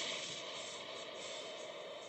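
Cartoon sound effect of rocket booster boots firing: a steady rushing blast, like a jet, that eases off slightly towards the end, played through a TV speaker.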